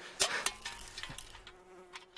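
Flies buzzing in a faint steady hum, with two short clicks near the start.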